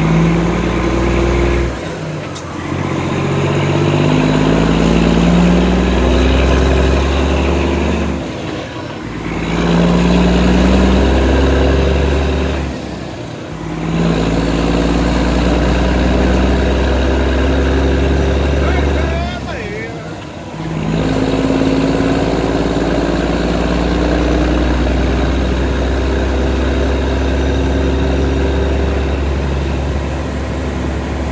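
Detroit Diesel engine of a semi truck heard from inside the cab, pulling through the gears: its drone climbs in pitch in each gear, with four short dips where it shifts up.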